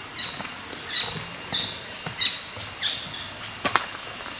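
A forest bird repeating a short high call five times, about two-thirds of a second apart, then a few sharp steps on the leaf-covered trail near the end.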